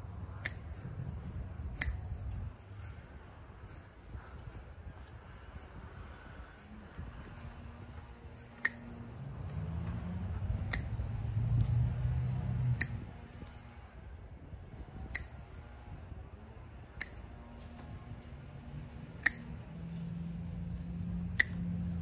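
Hand pruning snips cutting azalea stems: about nine sharp, single clicks spaced a couple of seconds apart, each one blade closing through a stem. A low rumble underlies them and swells in the middle.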